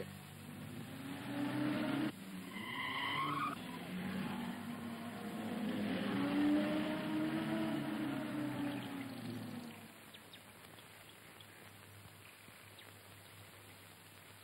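A car driving and pulling in, its engine note rising and then falling, with a brief tyre squeal about three seconds in. The engine sound fades away about ten seconds in, leaving only a faint background.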